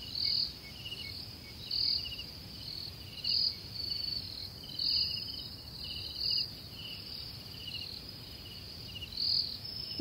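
Crickets chirping in a night chorus: bright, high chirp bursts recur about every second and a half over a fainter, quicker pulsing trill.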